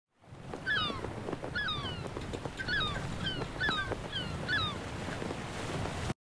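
A bird calling repeatedly, five short two-part calls about a second apart, over a steady rushing background.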